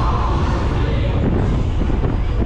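Wind buffeting the microphone of a camera riding on a swinging KMG Speed fairground ride as the arm carries the seats up high, a loud steady low rumble.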